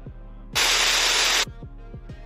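A loud burst of static-like white noise starts suddenly about half a second in, lasts about a second and cuts off. Background music with a steady beat plays throughout.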